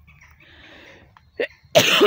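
A person coughing: a short catch in the throat, then a loud, sharp cough near the end.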